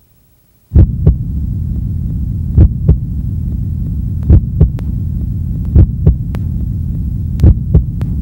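A low droning hum sets in about a second in, with a heartbeat-like double thump about every second and a half. It is the opening of a presentation video's soundtrack.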